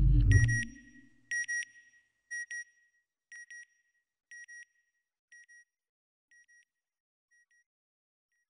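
Electronic logo sound effect: a deep swell that falls away within the first second, then pairs of short high beeps repeating about once a second, each pair fainter than the last, like a fading satellite signal.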